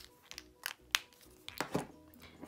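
A few short, sharp clicks and taps of plastic pens and marker caps being handled and set down on a tabletop, the loudest about a second in.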